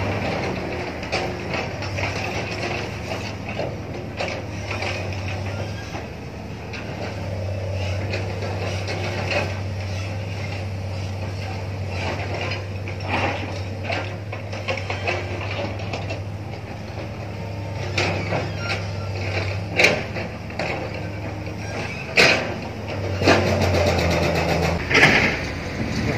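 A heavy diesel engine running, a steady low drone that grows louder for a while and eases, with occasional sharp knocks and clanks.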